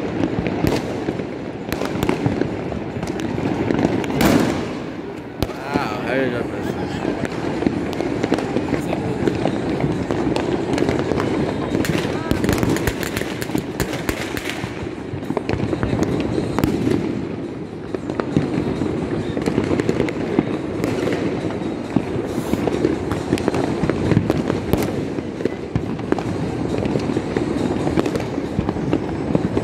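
Many fireworks and firecrackers going off at a distance across a city at once: a dense, continuous crackle of pops and bangs. The voices of people close by are mixed in.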